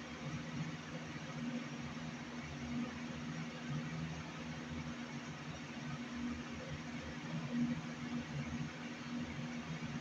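Steady room noise: a low hum under an even hiss.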